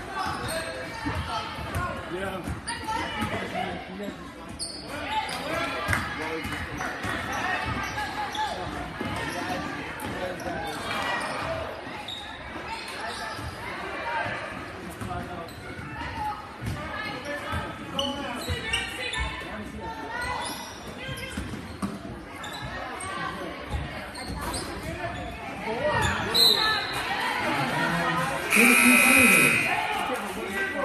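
A basketball dribbling and bouncing on a hardwood gym floor, with spectators' chatter and players' calls echoing in a large gym. Near the end comes a short high whistle, then a scoreboard horn sounds for about a second.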